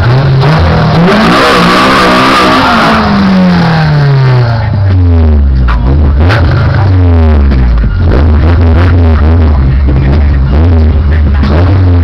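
Car engine revving hard: its pitch climbs over the first couple of seconds with a hissing noise at the peak, then falls back and settles. Music with a steady beat plays underneath.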